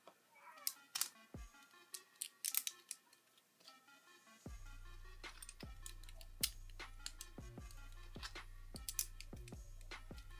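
Plastic Lego pieces clicking and snapping together as they are pressed on and handled, many short sharp clicks throughout, over quiet background music. A low steady hum comes in about halfway through.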